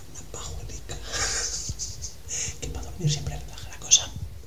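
A man whispering in short hissy bursts, with a brief low voiced murmur about three seconds in and a click near the end.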